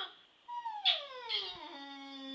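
A woman singing without words: a short high note about a second in, then a long slide downward in pitch that settles into a held low note.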